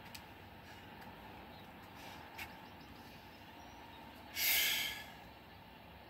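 A man's short, forceful breathy exhale about four seconds in, lasting under a second, as he catches his breath between burpees. It stands out over a low, steady background hiss.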